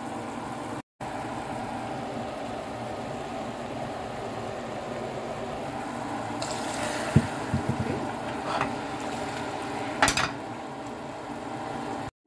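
Melted sugar bubbling in a saucepan as it caramelizes, then about six seconds in a cup of boiling water poured onto the hot caramel, setting off a rush of hissing. A few sharp knocks follow, and a louder clatter near the end.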